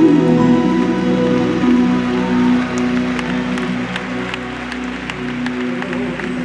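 Live gospel band holding sustained chords as a worship song closes. Scattered sharp claps come in from about halfway through.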